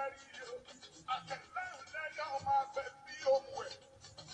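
A man's voice chanting in a sung, melodic way, with several notes held for up to about a second.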